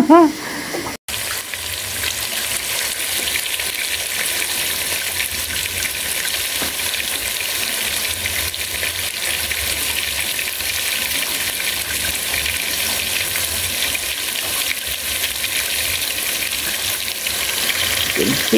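Hand-cut potato chips deep-frying in a small pot of hot oil: a steady sizzle that starts abruptly about a second in.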